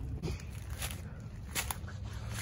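Footsteps through leaf litter and brush: a few short crunching steps over a steady low rumble.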